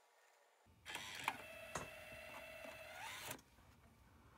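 Slot-loading optical drive of an iMac G3 ejecting its disc: the drive motor whines at a steady pitch for about two and a half seconds, with a couple of clicks from the mechanism, then stops.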